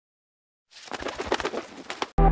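Pigeons, heard from just under a second in as a quick, irregular run of short pulsing sounds.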